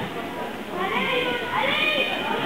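Background chatter of voices echoing in a sports hall, with a high voice calling out in two rising cries in the second half.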